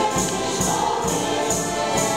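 A folk group of men and women singing together in chorus to instrumental backing, with a jingling beat a little over twice a second.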